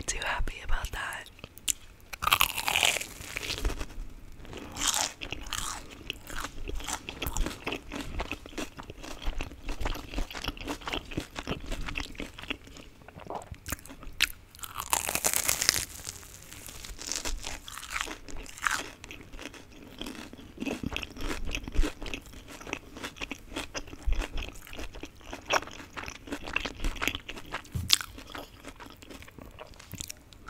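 Close-miked crunchy bites and chewing of a fried Korean corn dog's crisp coating, with many small irregular crackles. The loudest bites come about two seconds in and again midway.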